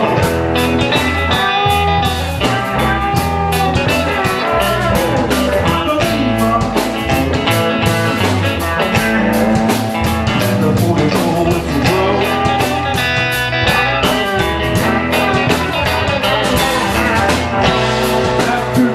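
Live electric blues-rock band playing loud and steady: two electric guitars over bass guitar and a Brady drum kit, a guitar line with bending notes over a driving beat.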